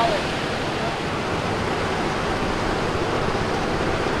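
Steady rush of water spilling over a small mill-pond dam into a shallow brook.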